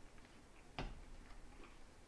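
Quiet room with a few faint, irregular ticks and one sharper click a little under a second in.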